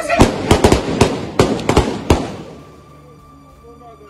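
Gunfire: about nine sharp shots at uneven spacing over the first two seconds, then it stops.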